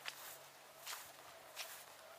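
Faint footsteps of a person walking on grass, three steps a little under a second apart.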